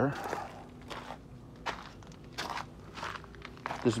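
Footsteps on gravel and rocks, about one step every two-thirds of a second.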